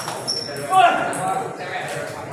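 Table tennis ball clicking as it bounces a few times, with a short loud voice call about a second in, echoing in a large hall.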